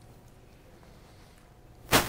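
Quiet room tone, then near the end a brief, loud rush of noise lasting about a third of a second, with two peaks.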